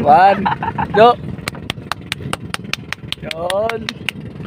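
Small outboard boat engine of an outrigger bangka running, with a rapid, even ticking of about eight beats a second from about a second and a half in, over a low steady hum. Short bursts of voice (exclamations or laughter) come at the start and near the end.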